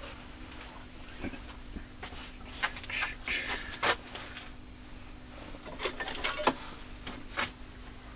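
Scattered light clicks and knocks of objects being handled on a workbench, over a faint steady hum.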